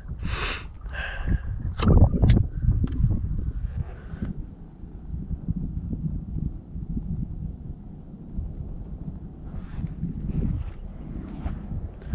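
Wind buffeting the microphone: a steady low rumble, with a few short louder sounds in the first four seconds.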